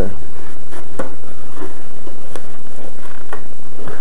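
Light clicks and rustling from handling the foam flying-saucer body as it is lifted off the quadcopter, over a steady hiss, with its motors stopped. A low hum fades out in the first second and a half.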